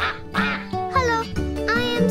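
Cheerful children's theme music with a cartoon duck quacking over it: about three quacks, each falling in pitch.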